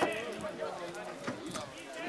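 Men's voices calling out during a football match, with a few short knocks.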